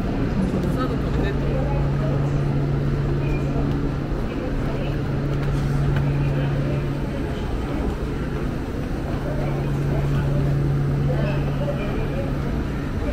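Busy railway station platform: a steady low hum, with the shuffle and faint murmur of a crowd climbing the stairs.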